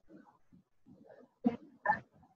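Faint, off-microphone speech: a few broken, quiet syllables, with two louder short ones near the end.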